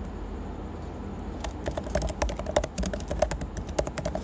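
Typing on a computer keyboard: a quick run of key clicks starting about a second and a half in.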